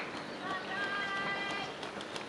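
A roadside spectator's voice calling out to passing race runners in one long, level, held call starting about half a second in, over steady outdoor background noise.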